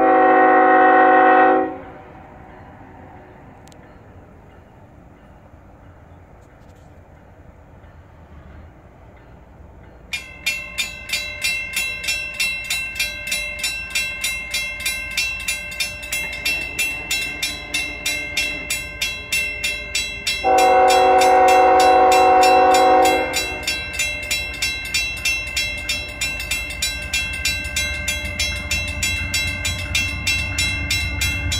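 Locomotive horn sounding a long blast, then a grade-crossing warning bell starting to ring about ten seconds in at a steady two to three strokes a second. A second long horn blast comes about two-thirds of the way through, and a low rumble of the approaching train builds near the end.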